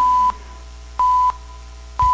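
Two short, steady electronic beeps of the same pitch, one second apart: countdown pips leading into the start of a radio news broadcast.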